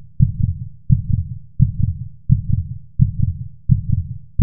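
Heartbeat sound effect: a steady run of low lub-dub thumps, each beat a quick double hit, about one and a half beats a second.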